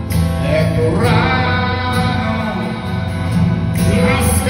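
Live band playing an instrumental passage of a song, with electric guitar heard over bass and keyboards in a large hall.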